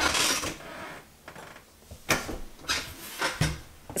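Ceramic plant pot being handled and set against a wooden tabletop: a brief scraping rustle at the start, then a few light knocks, the last with a dull thud near the end.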